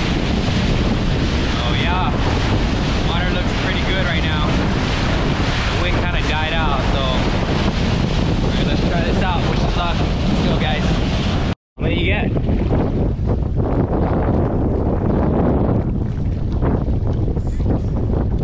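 Small outboard-powered boat running fast on open sea: the motor and the rushing wake under heavy wind on the microphone. The sound cuts out abruptly about twelve seconds in, and after it comes thinner wind and choppy water.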